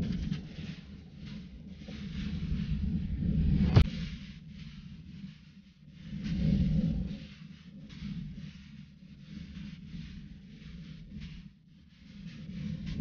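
Wind rumbling on a bike-mounted camera's microphone during a hard uphill ride, swelling and fading in gusts, with a sharp click about four seconds in.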